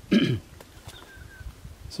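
A man clearing his throat once, a short sound lasting under half a second.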